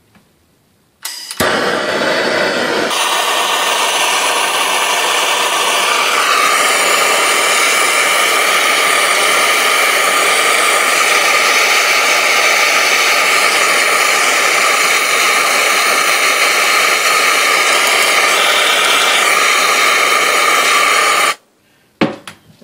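Blowtorch flame burning with a loud, steady hiss while it heats a spoonful of zinc pennies to melting. It starts about a second in and cuts off abruptly just before the end.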